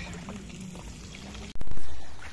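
Oil sizzling steadily in a frying pan over a wood fire, where fish is being fried. About a second and a half in, the sizzle cuts off abruptly. A much louder rush of noise takes its place, swells, then begins to fade.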